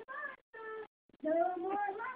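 A baby babbling: three short, high-pitched vocal sounds, the last one the longest and loudest.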